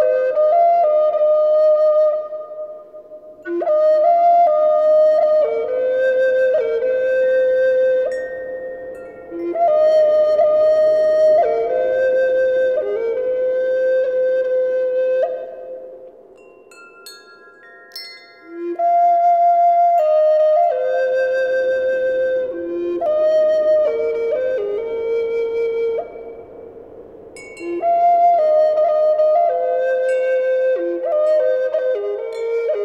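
Solo flute playing a slow melody in long held notes, phrase by phrase, with short breaths between phrases and a longer quiet pause near the middle.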